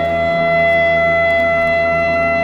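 A clarinet holding one long, steady note over a soft orchestral accompaniment in the instrumental opening of a Bulgarian song.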